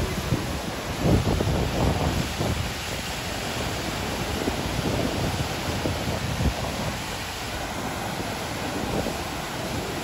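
Water rushing through a reservoir spillway gate and churning into the pool below, a steady, heavy rush. Irregular low gusts of wind buffet the microphone, strongest about a second and two seconds in.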